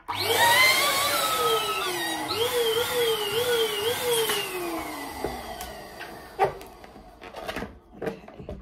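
Balloon pump running as it inflates a latex balloon: a rush of air with a motor whine that wavers up and down, then slides steadily lower in pitch and fades out about five seconds in.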